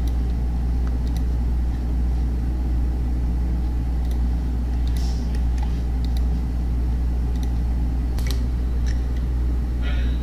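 A steady low hum, with a few faint clicks scattered through it from a computer mouse.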